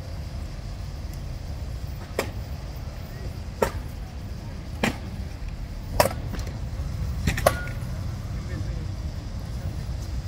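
Staged mock combat: a long-hafted axe and a sword knocking against each other and against a round shield. There are six sharp knocks spread about a second apart, the last two coming in quick succession, over a steady low background rumble.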